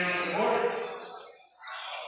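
Indistinct voices of people on and around a basketball court, echoing in a gym hall, loudest in the first second and fading after, with a few short sharp sounds from the court.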